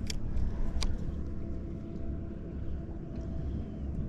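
Steady low rumble with a faint steady hum from a bow-mounted electric trolling motor holding the boat in place on Spot-Lock. Two sharp clicks, one right at the start and one just under a second later, come as the spinning rod and reel are swung out in a pitch.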